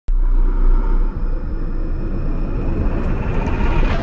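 Logo-intro sound effect: a deep rumble that starts suddenly and swells, rising in brightness toward a hit at the very end.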